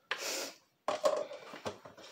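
Hands squeezing and kneading lime-green Jell-O Play slime in a glass bowl: a short soft rush, then from about a second in a string of quick wet squelches and clicks.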